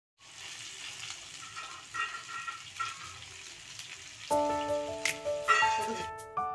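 Vegetable rolls sizzling as they shallow-fry in hot oil in a pan, a steady hiss. About four seconds in, background music with held notes comes in over the sizzle and becomes louder than it.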